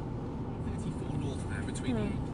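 Steady low rumble of a car's cabin on the move, with a radio faintly playing speech near the end as stations are being searched.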